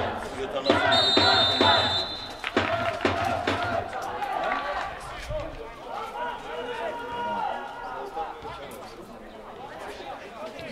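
Men's voices shouting and calling across a football pitch, loudest in the first few seconds. About a second in there is a steady, high, shrill whistle blast lasting about a second.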